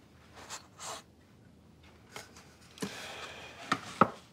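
Faint handling sounds of a small wooden box and a carved wooden toy boat: a few brief rubs and clicks, then a longer rustling scrape about three seconds in, ending in a couple of sharp clicks.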